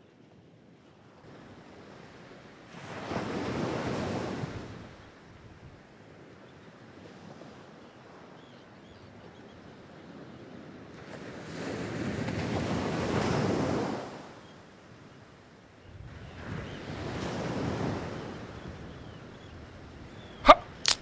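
Ocean waves washing onto a beach, three surges that swell and fade over a low steady surf.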